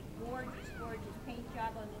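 A cat meows once, a single call that rises and then falls in pitch, about half a second in.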